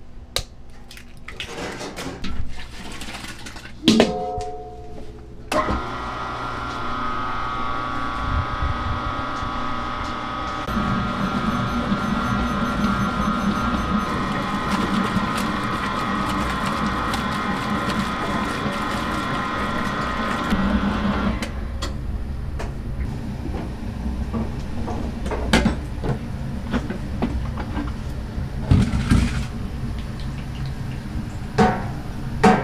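Stand mixer running, its dough hook kneading rice-flour croquette dough in a steel bowl: a steady motor hum that starts suddenly about five seconds in and cuts off about eight seconds before the end. Before and after it there are clanks and knocks of the metal bowl and hook being handled, one with a short ring just before the motor starts.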